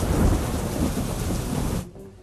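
Heavy rain pouring down, a dense hiss with a deep rumble underneath. It cuts off abruptly near the end.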